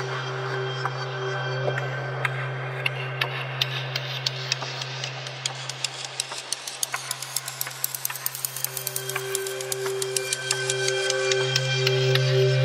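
Nepalese bell sample processed in a drum sampler, its tonal and transient parts split and treated separately: a steady low drone with a higher sustained ringing tone, under a rapid stream of sharp clicks that grows denser in the second half.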